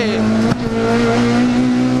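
Rally car engine running at high, steady revs in third gear, heard from inside the cabin, with a brief dip and a knock about half a second in.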